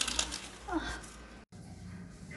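Crackly rustling of a leaf garland being handled and pressed into place, with a brief sound that rises in pitch a moment later; the audio cuts off suddenly about one and a half seconds in.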